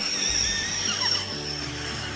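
Breath blown through a plastic bottle nozzle taped to a CD, inflating a balloon: a rush of air with a steady high-pitched whistle that stops shortly before the end. Background music plays underneath.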